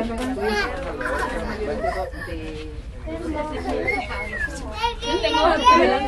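Several voices talking and calling over one another, high-pitched ones among them, with one high gliding call about four seconds in and the loudest burst of voices near the end. A low steady hum runs underneath.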